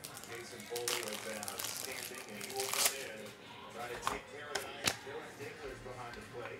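Trading cards and pack wrappers being handled: crinkling and rustling, with a few sharp clicks in the second half, over a faint background voice.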